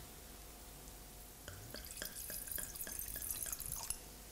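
Red wine being poured from a bottle into a large wine glass, starting about a second and a half in: a faint, quick run of small splashes and glugs as the wine hits the glass.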